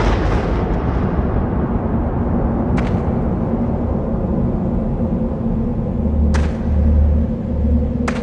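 Cinematic sound-design intro: the fading tail of a deep boom gives way to a steady low rumbling drone with a sustained low hum underneath. A few soft low pulses come near the end.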